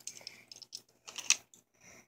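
Light clicks and taps of plastic Hot Wheels track pieces being handled, with a sharper click a little past the middle.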